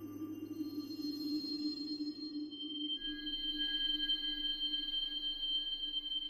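Ambient electronic music from a Mutable Instruments modular synthesizer: a steady low drone with a grainy, hissy texture, and high sustained tones entering about half a second in and again around three seconds.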